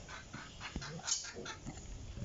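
Chicken clucking in a quick, even series, about five or six clucks a second, stopping near the end.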